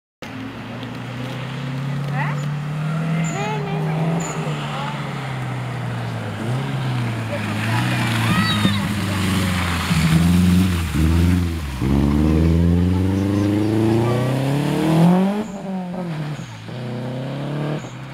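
Subaru Impreza rally car's turbocharged flat-four engine coming up the road through the gears, loudest as it passes close at about ten to eleven seconds. Its pitch drops at about twelve seconds, then the engine revs steadily higher as it accelerates away. It cuts back at about fifteen seconds and fades.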